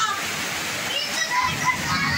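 Heavy rain falling steadily, an even hiss of water.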